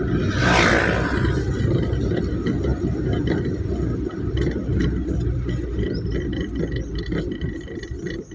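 Engine and road rumble of a vehicle heard from inside its cabin while driving on a paved road, steady and low. A brief rush of noise about half a second in, as an auto-rickshaw is passed close by.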